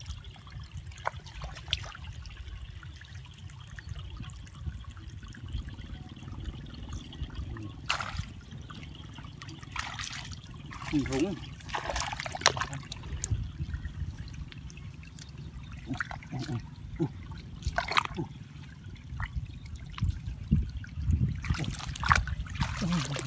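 Hands sloshing and splashing in shallow muddy paddy water while feeling for fish, with a cluster of louder splashes in the middle and more near the end, over a steady low rumble.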